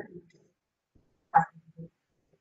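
A man's speech, paused: a phrase trails off at the start, then about a second of near silence, then a short spoken syllable about one and a half seconds in.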